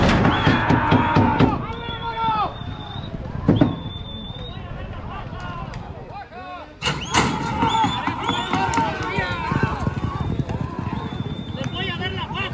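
Spectators shouting and cheering as a horse race runs. A loud bang from the starting gate comes right at the start, and about seven seconds in the sound jumps suddenly to a new burst of shouting.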